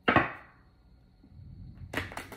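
Tarot cards being handled: a sudden rustling snap of the deck at the start that fades within half a second, then a faint click just before the end.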